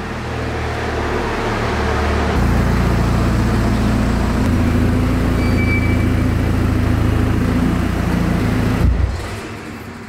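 Big-turbo Mk6 Golf 2.0 TDI common-rail diesel running at low speed with a steady low drone, growing louder over the first couple of seconds as the car creeps into the bay. Near the end there is a short shudder as the engine is switched off, and the sound dies away.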